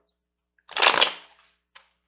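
Tarot cards being shuffled: one brief, loud riffle of the deck a little under a second in, followed by a light tap of cards.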